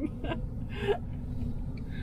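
Steady low rumble of a vehicle driving, heard inside its cab, under a short gasping laugh about a second in.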